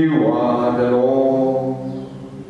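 A man's voice singing one long held note, about a second and a half, over a steady, soft musical drone.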